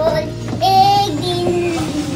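A young girl singing, drawing out long sung notes.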